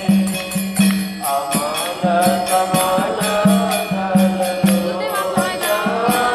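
Devotional chanting music: voices singing a chant melody over an even beat of jingling percussion and a repeated low drum note.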